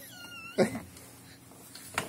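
A baby's brief, thin high-pitched squeal that wavers slightly for about half a second at the start, followed by a man's single short word.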